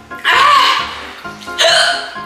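Two hiccups about a second apart, over background music: hiccups brought on by eating very spicy noodles.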